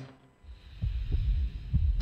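After a brief hush, a run of deep, low thumps in a slow pulsing beat begins about half a second in, like a heartbeat sound effect laid under the footage.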